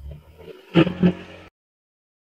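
A person eating close to the microphone: chewing and mouth sounds, with two short, low voiced hums about three-quarters of a second and a second in. The sound then cuts off abruptly to silence.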